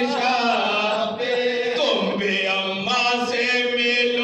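A group of men chanting a soz, the Urdu elegiac lament recited at a Shia majlis, in unison into microphones. The voices hold long notes that slide and waver in pitch.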